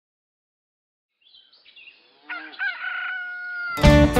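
A rooster crowing once, one long call that begins a little after two seconds in and holds a slightly falling note. Just before the end, country music with strummed guitar comes in abruptly.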